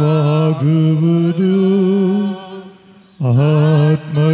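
A man's voice chanting a slow liturgical melody in long, held notes, with a short pause near the three-second mark before it resumes.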